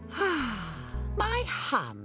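A cartoon character's voice: a breathy sigh falling in pitch, then short voiced sounds that rise and fall, over soft music that stops about one and a half seconds in.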